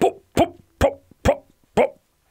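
A man's voice making five short 'pop' sounds, about two a second, imitating a truck engine spluttering as it runs out of petrol.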